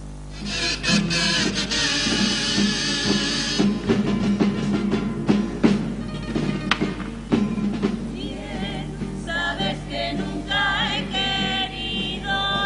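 A carnival comparsa's Spanish guitars start up and play strummed chords as the instrumental lead-in to a song. A choir of voices comes in over them in the last few seconds.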